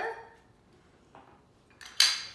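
Mostly quiet, with a faint click about a second in. Near the end comes a sharp, loud clink as a hand-held lemon squeezer knocks against a metal cocktail shaker.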